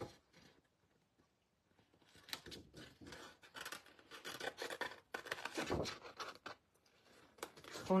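A sheet of printed paper crackling and rubbing as it is handled and slid across a craft table, with a soft thump near the end. The paper sounds start after a brief quiet spell.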